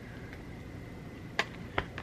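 Scissors snipping into a product's cardboard or plastic packaging: a couple of short, sharp clicks close together about a second and a half in.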